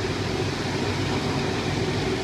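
Steady jet engine noise from a twin-engine widebody airliner taxiing at idle: an even rushing noise with a low hum under it.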